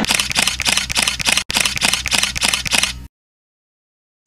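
Rapid camera-shutter clicks, about five a second, over a low steady drone; they cut off suddenly about three seconds in, leaving silence.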